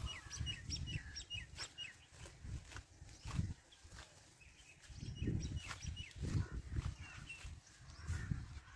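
A small bird chirping in short repeated calls, thickest in the first two seconds and again near the end. Under the calls come bouts of rustling as leafy green fodder plants are handled and pulled by hand.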